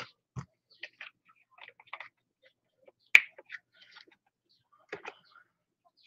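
A new plastic paint bottle being opened by hand, its cap and seal worked at with a small tool: a scatter of faint clicks and scratches, with one sharp snap about three seconds in.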